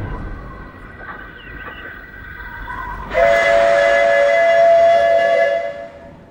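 Steam locomotive whistle blowing one long chord of two close notes. It starts about halfway in and cuts off shortly before the end.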